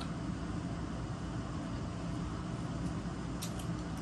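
Steady low background hum with a couple of faint clicks about three and a half seconds in.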